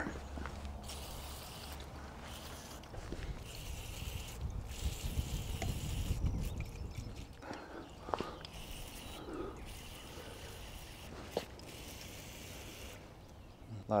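Aerosol can of Finish Line E-Shift groupset cleaner spraying through its straw onto a bike derailleur: several long hisses, each cut off abruptly, with a few faint clicks.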